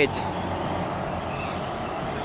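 Steady road traffic noise: an even rush of passing vehicles with no distinct events.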